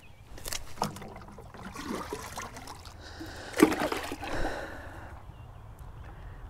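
Light splashing and sloshing of water at the edge of a pond, with one sharp knock about three and a half seconds in.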